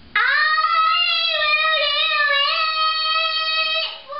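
A young boy singing one long held note, scooping up into it and wavering slightly, breaking off just before the end.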